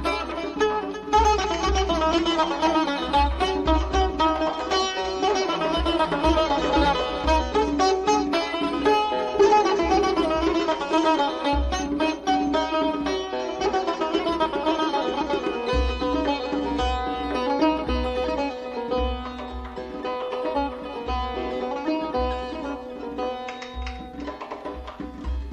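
A Persian plucked lute plays a fast, dense run of notes in dastgah Mahour, with rhythmic tombak drum strokes underneath.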